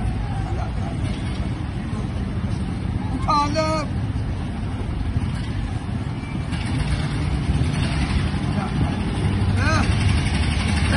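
Steady low rumble of a nearby motor vehicle engine running, growing stronger about two-thirds of the way through. A person's short call cuts through about three and a half seconds in, and another comes near the end.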